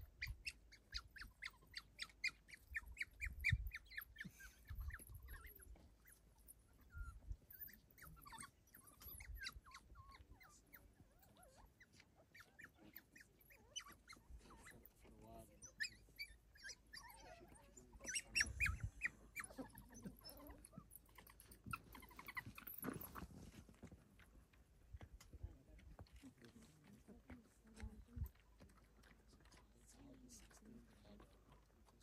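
African wild dog pups squeaking and twittering in quick runs of short high-pitched calls as they crowd and nuzzle an adult's mouth, begging for food. The calls come in bursts.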